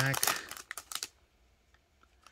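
Foil wrapper of a Panini Prizm basketball card pack crinkling and clicking in the hand, a quick run of crackles in the first second.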